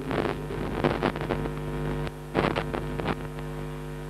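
Steady electrical mains hum through a concert PA system, a stack of low steady tones. Four short bursts of noise break through it.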